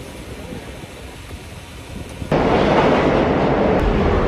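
Quiet outdoor background noise, then, after an abrupt change about two seconds in, a loud steady rumbling noise that carries on.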